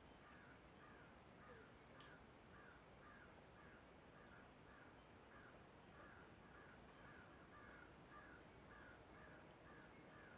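A bird calling faintly and over and over, short calls about twice a second at a steady pace.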